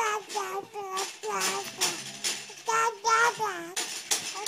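A baby's high-pitched babbling in a sing-song string of short vowel sounds, broken by brief pauses.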